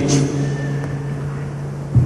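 A steady low hum with a faint hiss behind it: the background noise of an old recording or sound system, heard in a pause between a speaker's sentences.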